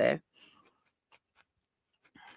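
Felting needle jabbing repeatedly into a small wool star, a run of faint, quick, irregular pokes.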